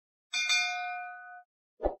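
Notification-bell chime sound effect: a single bright ding that rings and fades over about a second, followed by a short low pop near the end.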